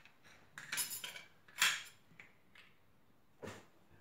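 Small ceramic bowls and metal kitchen utensils being moved and set down on a tiled tabletop: a handful of short clatters, the loudest about a second and a half in.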